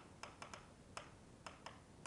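Pen tip of an interactive whiteboard stylus tapping and clicking against the board's surface while handwriting, about six quiet, sharp clicks at uneven intervals.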